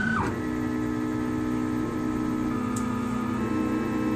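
Rostock Max delta 3D printer's stepper motors whining as its carriages drive the print head down toward the bed at the start of a print. A high whine drops in pitch and ends just after the start, and a steady, lower whine of several tones follows.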